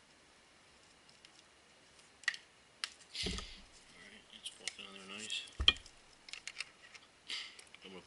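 Small clicks and handling noises as a brass fitting, gauge line and tape are worked by hand on a boost gauge, with two dull knocks about three and five and a half seconds in, and a brief mutter near five seconds.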